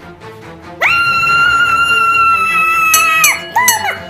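A cartoon character's long, high-pitched scream, starting about a second in and held for about two and a half seconds before falling away, followed by two short cries near the end, over background music.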